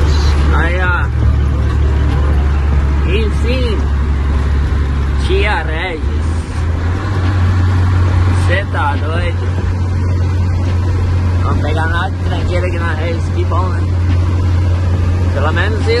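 Truck diesel engine heard inside the cab, running under load with a steady low drone while accelerating; about six and a half seconds in the engine note steps up in pitch.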